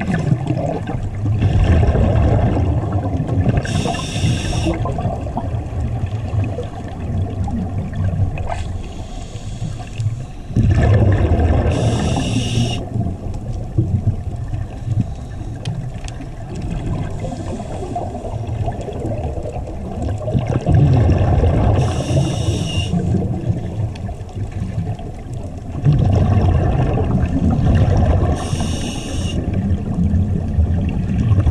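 Scuba diver breathing through a regulator underwater: four short hissing inhales several seconds apart, between them a low gurgling rumble of exhaled bubbles.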